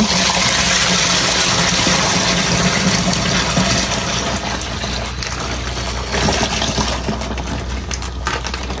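Wine-kit juice concentrate pouring from its plastic bag into a plastic bucket of water: a steady splashing gush that eases slightly about halfway through.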